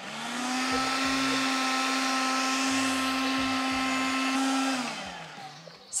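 Kärcher cordless window vacuum's suction motor switched on, running steadily with an even hum and a rush of air, relatively quiet. About five seconds in it is switched off and winds down.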